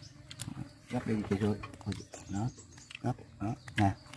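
People talking quietly at a meal in short phrases, with a few light clicks near the start.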